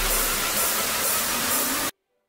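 Electronic hiss of white noise from an intro logo sting, fading slowly, with the tail of a low bass note dying away at the start. It cuts off abruptly just before the end.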